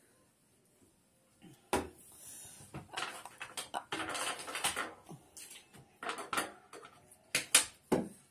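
Near silence, then a knock about two seconds in, followed by an irregular run of small clicks, knocks and rustling as things are handled on a table, with two sharper knocks near the end.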